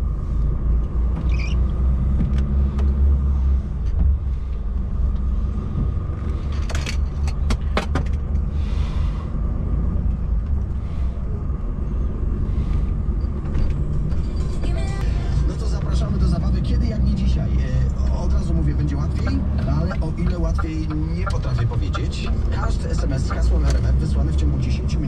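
Semi-truck's diesel engine running inside the cab as the truck pulls away and drives on, a steady low rumble, with a few short clicks about seven to eight seconds in.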